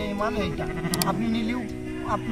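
Garol sheep bleating over background music.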